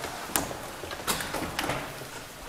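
Handling noise from people rising at a wooden bench: three sharp taps or knocks in two seconds, with faint rustling between them, as chairs are pushed back and papers gathered.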